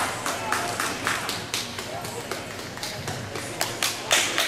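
Spectators clapping irregularly, several claps a second, with crowd voices underneath.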